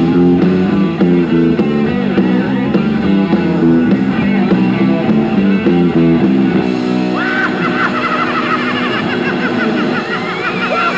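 Live heavy metal band playing a distorted electric guitar riff of short, repeated chords. About seven seconds in, the riff gives way to held chords with a high lead line that wavers with wide vibrato.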